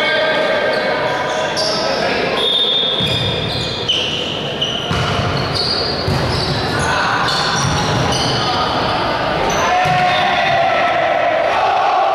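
Volleyball being played in a reverberant sports hall: the ball struck and bouncing on the wooden court in a scatter of sharp hits, among players' and spectators' voices, with several short high squeaks.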